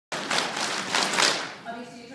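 A loud burst of dense noise with a few surges, fading out after about a second and a half, followed by a faint voice.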